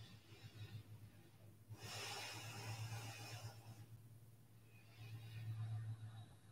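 Slow, faint breaths of a person holding a reclined yoga pose: a long breath in the middle and another beginning near the end, over a steady low electrical hum.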